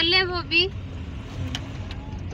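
A car running, heard from inside the cabin: a steady low engine and road hum, with one short click about one and a half seconds in.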